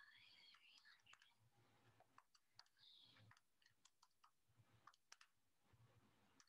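Near silence with faint, scattered short clicks, about a dozen of them, mostly in the second half.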